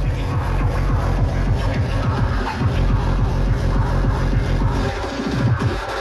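Loud electronic dance music from a DJ's decks over a club sound system, driven by heavy, fast kick drums that drop in pitch; the kicks pause briefly about five seconds in.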